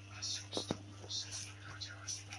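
Soft whispering, heard as short hissy breaths, with a few light clicks over a steady low hum.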